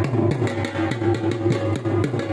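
Music with a quick, steady drum beat under held melodic tones.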